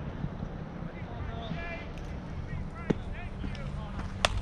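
Faint, distant voices calling out over a steady low rumble of wind on the microphone, with one sharp click about three seconds in.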